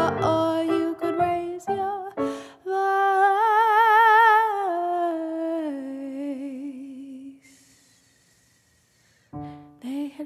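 A woman's voice sings a long wordless note with a wide vibrato over electronic keyboard, stepping down in pitch and fading away. After a pause of about two seconds, keyboard and voice come back near the end.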